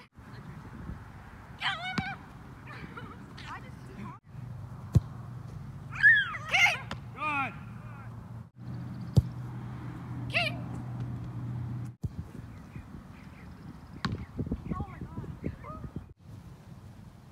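A soccer ball kicked twice, two sharp thumps about five and nine seconds apart in time, amid repeated high-pitched wordless calls, the loudest about six seconds in, and a low steady hum in the middle.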